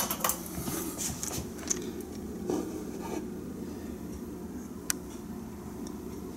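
Light clicks and knocks of handling, clustered in the first second or so and once more near the end, over a steady low hum of room tone.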